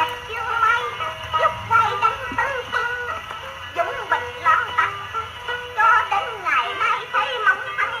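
A wind-up Columbia portable gramophone playing a 78 rpm record of music with a singing voice. The sound is thin and narrow, with little bass or treble.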